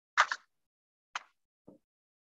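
Three short clicks heard over a video call, the first the loudest and doubled, the last duller and lower; the call's noise suppression cuts to dead silence between them.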